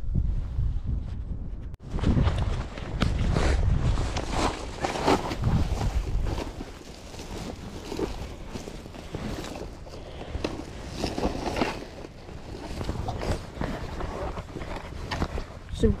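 Wind buffeting the microphone, then, after a cut, a woven plastic sack rustling and crinkling irregularly as it is handled and opened.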